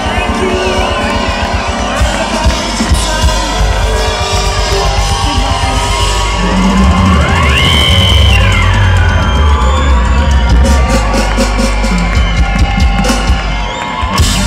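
Live band playing the instrumental outro of a dance-pop song through a large PA, heard from among the audience, with crowd shouts over it. About halfway through the bass gets heavier and a high tone sweeps up, holds, and falls back down.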